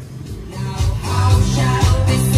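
Music played through a Jarguar Suhyoung PA-506N karaoke amplifier into its second pair of speakers (speakers 3 and 4). It comes in about half a second in and grows louder over the next second as the Music 3-4 volume knob is turned up, with strong bass notes.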